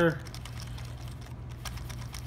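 Faint scattered clicks of poker chips shifting against each other and against the cardboard dividers of a Paulson chip box as a hand pushes on the stacks, with more clicks near the end; the chips can move because the box is a loose fit. A steady low hum runs underneath.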